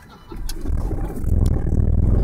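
Car engine and road rumble, heard from inside the cabin, building up about a third of a second in as the car pulls away from a stop sign and turns.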